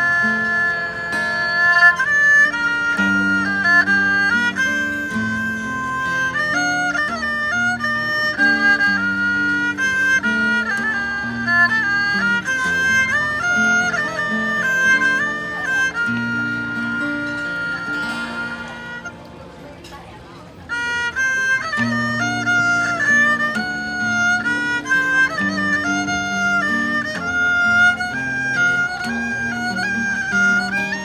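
A saw duang, the Thai two-string bowed fiddle, plays a sliding, sustained melody over guitar accompaniment. The music drops quieter for a moment about two-thirds of the way through, then comes back at full strength.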